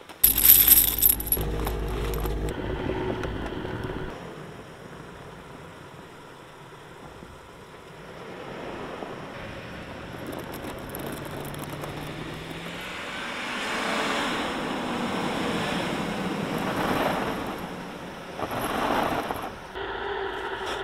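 Box truck's engine revving, its pitch rising about halfway through, with a steady noise of wheels working in deep snow. A loud rush of noise comes first.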